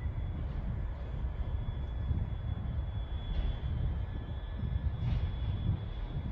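Class 350 electric multiple unit pulling away from the platform: a steady low rumble with a faint, steady high tone above it.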